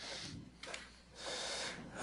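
A person's faint breaths on a microphone: a short one at the start and a longer one over the second half.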